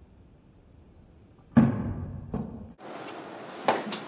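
A hollow thump about one and a half seconds in, dying away over about a second, then a lighter knock: a light cup flyer, two cups taped bottom to bottom, hitting the hard floor and bouncing. A short click near the end.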